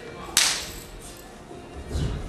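A wushu athlete's jumping kick: one sharp slap a third of a second in, with a brief ringing tail, then a dull thud of landing on the carpeted floor near the end.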